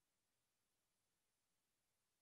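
Near silence: only a very faint, steady hiss.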